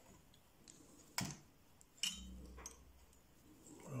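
Quiet handling of fly-tying thread and a bobbin at the vise, with two sharp clicks about one and two seconds in.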